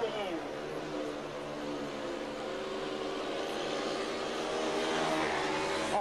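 Speedway motorcycles racing, their 500 cc single-cylinder engines running steadily at high revs and growing a little louder toward the end.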